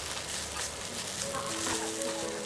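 Egg noodles, meatballs and vegetables sizzling in a hot pan as they are stir-fried and tossed with tongs.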